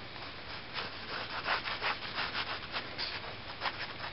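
Fine-tip Sharpie pen scratching across paper in a quick run of short strokes as a line is drawn.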